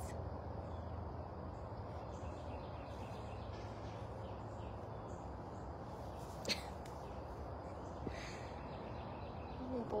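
Quiet outdoor ambience: a steady background hiss with faint, scattered bird calls, and a single sharp click about six and a half seconds in.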